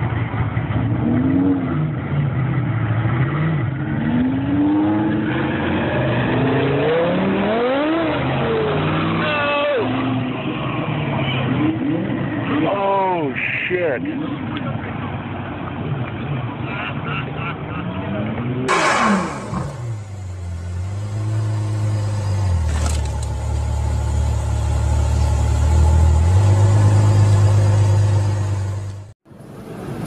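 Car engines revving, their pitch sweeping sharply up and down several times. From about two-thirds of the way in, a lower, steadier engine note that steps up and down in pitch takes over.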